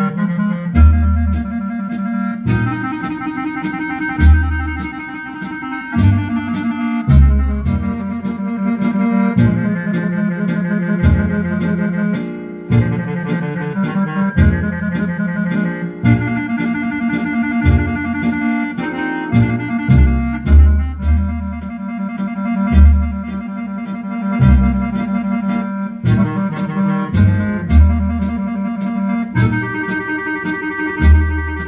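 Accordion music played live through a PA: a sustained melody in a reedy, clarinet-like voice over low bass notes that come in a steady rhythm about once a second.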